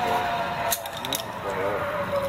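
Two sharp metal clicks, about a third of a second apart, of zipline harness carabiners and trolley being clipped onto the cable, under a steady thin tone that stops just before the first click; a voice is heard near the end.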